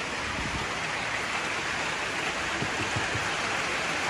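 Steady rain falling on a tin roof, an even hiss.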